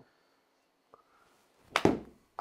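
A golf iron striking a ball off an artificial-turf hitting mat: one loud, sharp strike near the end after a near-silent swing.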